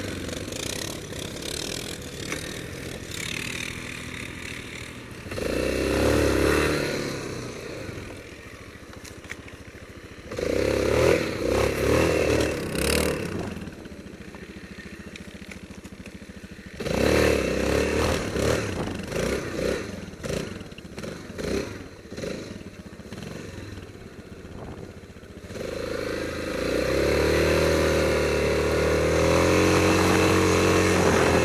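Yamaha Grizzly 660 ATV's single-cylinder four-stroke engine revving in repeated bursts of throttle, each followed by a quieter, lower-revving stretch. Near the end it is held steadily at higher revs.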